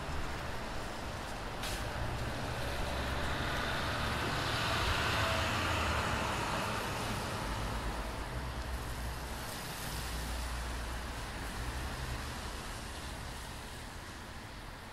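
Low, steady rumble with a hiss that swells and fades around the middle, and a single sharp click near the start: the mechanical background of a large indoor public hall.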